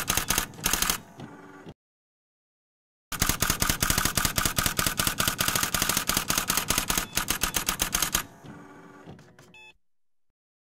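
Typewriter sound effect: rapid key clatter, a short burst that stops about a second in, then after a pause a run of about five seconds. Fainter clicks with a brief ringing tone follow near the end.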